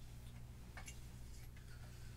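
Quiet room tone with a steady low hum and a faint click a little under a second in, from hands twisting a microphone holder on a mic stand.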